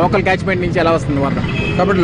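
A man speaking, over a steady low background rumble.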